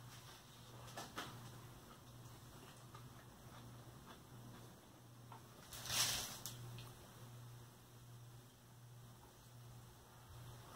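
Faint, wet chewing and mouth clicks from a man eating a chili cheeseburger, over a steady low hum. About six seconds in comes one short, louder hiss.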